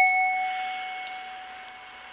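A handmade copper bell left ringing after a single strike: a few clear, steady tones slowly dying away.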